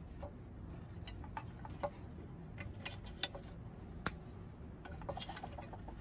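Faint, scattered small clicks and ticks of wire spade connectors being worked off the metal terminals of a turbo broiler lid's switch, with a couple of sharper clicks about three and four seconds in and a quick run of them near the end.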